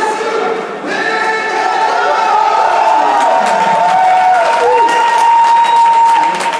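Fight-night crowd in a large hall chanting and cheering, many voices together, with one long held note rising out of it over the second half.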